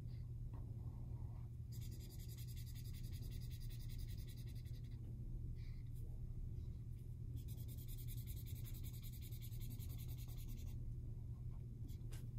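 Red felt-tip marker coloring on paper in two long spells of back-and-forth strokes, each about three seconds, with a steady low hum underneath.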